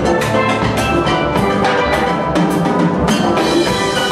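Steel band of many steel pans playing a dense run of struck notes, with a drum kit and percussion keeping the beat underneath.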